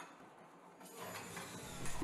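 Near silence, then from about a second in a faint, steady background noise of the recording room, growing slightly just before the narration resumes.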